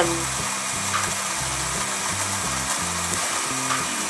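Pink toy blender running: a steady whirring hiss as it blends, holding even throughout.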